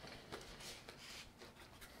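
Faint handling noise of hands working a kumquat: soft rustles and a few small clicks.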